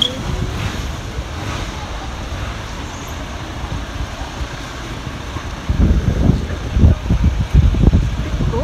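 City street traffic noise: a steady low rumble of passing vehicles, with louder, irregular low gusts of wind buffeting the microphone from about six seconds in.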